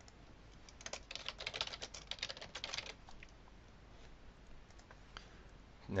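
Typing on a computer keyboard: a quick run of keystrokes about one to three seconds in, then a few isolated clicks.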